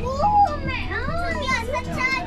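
Children's voices calling out in high, swooping shouts over background music.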